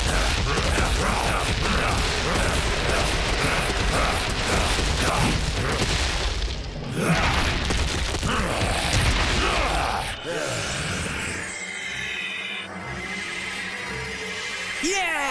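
Cartoon soundtrack: loud, dense, noisy action sound effects over music, which drop away about ten seconds in, leaving quieter music with a high shimmering tone.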